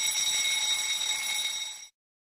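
Timer alarm sound effect ringing steadily as the countdown runs out, then cutting off just before two seconds in.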